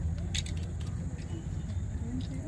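A vehicle engine idling with a steady low rumble, with faint sharp clicks over it.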